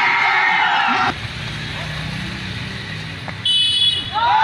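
Spectators shouting and cheering for about the first second, then a lower background murmur of the crowd. A brief high, steady tone sounds near the end.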